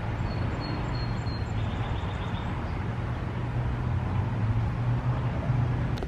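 Birds chirping faintly: a thin high whistle in the first second or so, then a short run of chirps, over a steady low hum of outdoor background noise.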